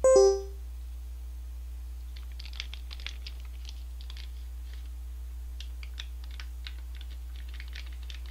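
A short electronic chime rings at the very start and dies away within half a second. Then, from about two seconds in, a ramen soup-powder packet crinkles in quick, irregular crackles as it is handled in the fingers close to the microphone.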